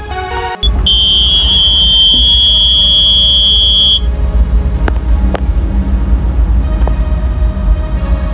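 JCB telehandler cab warning buzzer sounding a steady high-pitched tone for about three seconds over a low rumble, followed by two sharp clicks a half second apart.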